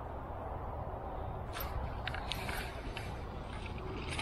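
Wind on the microphone, then from about a second and a half in, irregular crackling and rustling of dry reeds and grass being trodden and brushed underfoot on the bank.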